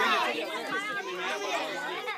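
Several voices talking over one another: chatter, with no single voice standing out.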